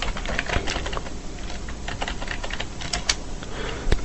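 Computer keyboard typing: a run of quick, irregular key clicks as a command is typed at a terminal.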